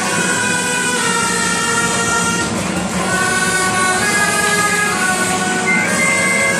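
Gralles, Catalan double-reed shawms, playing a tune together in held notes that step from pitch to pitch, with people clapping along.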